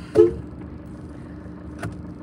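Car cabin noise while driving slowly: a steady low hum. A short loud sound comes just after the start, and a faint click near the end.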